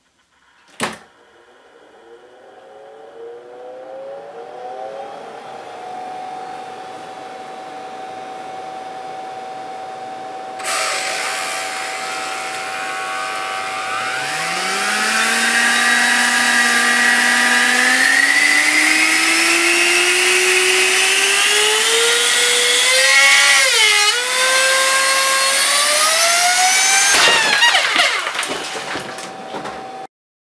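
3D-printed electric supercharger spinning up on its electric motor: a rush of air and a whine that climbs in pitch over many seconds, dips briefly, then rises again. Near the end a burst of sharp cracks and clatter as the impellers, printed from the same material as the housing, melt onto it and the unit breaks apart, after which the sound dies away.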